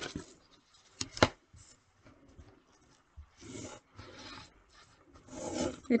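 Two sharp taps about a second in as paper and a plastic ruler are set down on a table, then a pen scratching along the ruler in two short strokes.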